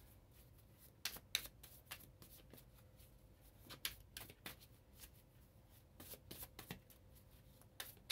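A tarot deck being shuffled by hand: faint, irregular clicks and rustles of the cards.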